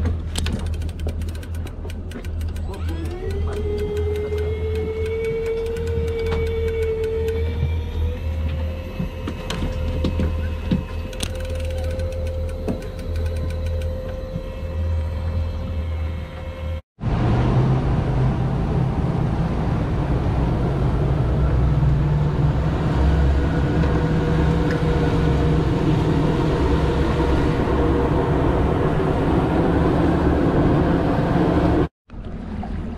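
Shimano Forcemaster 4000 electric jigging reel's motor winding in line: a whine that climbs in pitch for a few seconds, steps up once, then holds steady. From about halfway through, a fast boat's engine runs at speed with water rushing past the hull.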